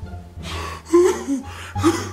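A man's gasping, wheezing laughter behind his hand, with two sharp loud gasps about a second in and near the end, over a music beat playing underneath.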